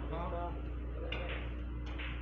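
Two short sharp clicks of carom billiard balls striking, about a second apart, over faint background talk and a steady low hum in the billiard hall.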